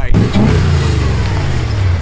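Engine of a 1961 Ferrari open-top sports car revving. Its pitch rises about half a second in, then slowly falls away.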